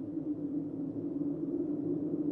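A steady, low held drone, a sustained ambient music pad laid under the closing shots.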